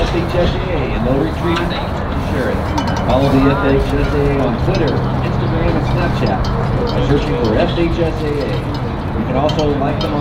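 Indistinct voices of several people talking, with no clear words, over a steady low hum.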